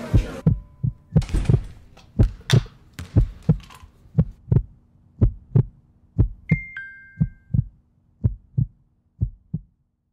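Heartbeat sound effect: a steady double thump about once a second, growing a little fainter toward the end. About six and a half seconds in, a short two-note falling phone text-message chime sounds over it.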